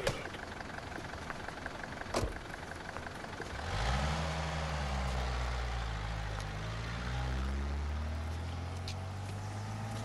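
A motor vehicle's engine: a low hum that starts about three and a half seconds in, rises in pitch, then runs steadily to the end. A sharp click comes about two seconds in.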